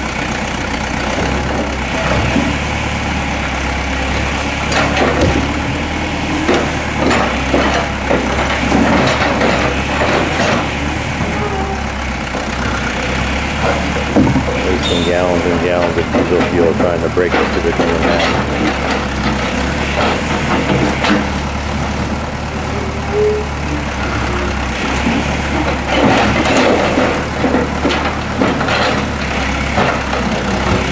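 John Deere backhoe loader's engine running steadily while the bucket works at broken concrete slab, with scattered short clanks and knocks of steel on concrete throughout.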